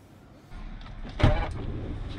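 Noise from the open side of a minivan as passengers board, with one loud thump a little over a second in.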